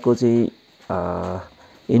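A man's voice: a short spoken syllable, then about a second in a steady, drawn-out hesitation hum of about half a second.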